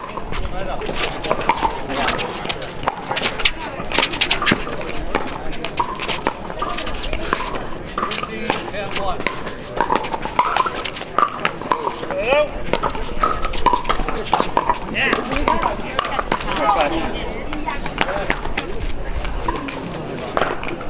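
Pickleball play: repeated sharp pops of paddles hitting the plastic ball, over the voices of players and onlookers.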